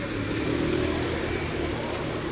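Steady street traffic: car engines and tyres on a wet road.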